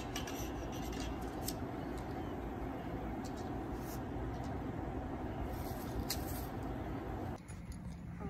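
Steady, even outdoor background noise, heaviest in the low range, with a few faint clicks and ticks; the noise drops suddenly near the end.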